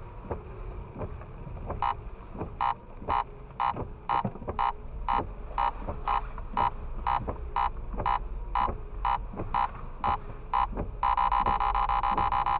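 Radar detector sounding a K-band alert: short beeps about two a second, turning into a continuous tone near the end as the signal strengthens.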